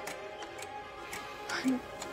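Suspense background music: sustained low tones under a regular ticking, clock-like beat.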